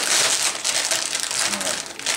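Plastic snack bag of Cheetos crinkling and crackling as it is handled and opened.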